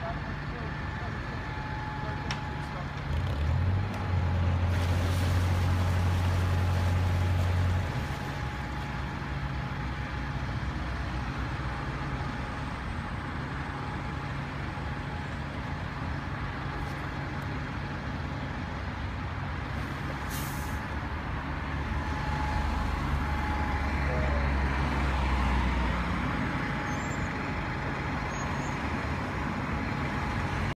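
Narrowboat diesel engine running with a steady low hum, opened up twice to a louder rumble while the boat is manoeuvred onto its mooring: about three seconds in until it drops back sharply at eight seconds, and again for a few seconds past the twenty-second mark.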